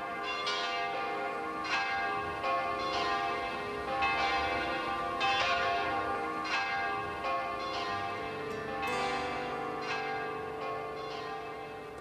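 Church bell ringing in its belfry, struck about every half-second to second, each strike ringing on into the next.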